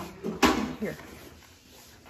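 Cardboard puzzle boxes knocking and sliding against each other as one is pulled from a stack, with one sharp knock about half a second in.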